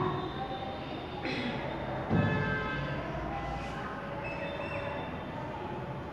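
Chalk writing on a classroom chalkboard, with a couple of sharper strokes about one and two seconds in, over a steady low hum and faint background voices.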